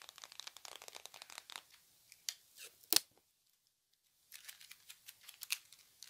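A roll of adhesive tape handled close to the microphone: a run of fine crackles and light taps, then a single sharp click about three seconds in. After about a second of silence, another close, crackly object-handling sound follows.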